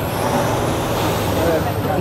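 Steady street traffic noise: a heavy road vehicle's engine running with a low, even hum.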